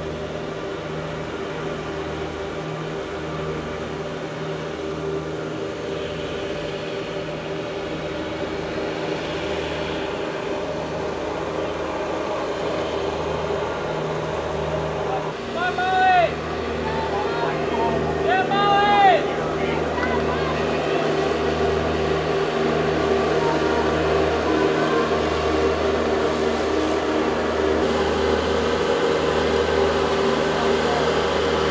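Riding lawn mower engine running steadily, growing slightly louder over the stretch. A voice shouts twice, about three seconds apart, midway through.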